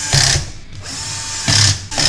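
Cordless drill-driver driving the power supply's mounting screws into a steel PC case. It runs in two short loud spurts, near the start and again about a second and a half later.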